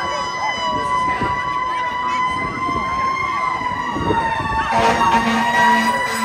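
Fire engine siren wailing at a high, nearly steady pitch that dips slightly and comes back up as the truck responds. Near the end a low horn sounds in short repeated blasts, over crowd chatter.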